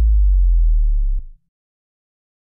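A deep, steady sub-bass synth tone, the held tail of the teaser's electronic music, cutting off suddenly a little over a second in.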